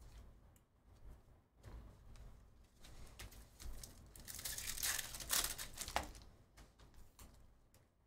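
Foil wrapper of a trading-card pack being torn open and crinkled, loudest for about two seconds in the middle. Softer rustles of cards being handled come before and after.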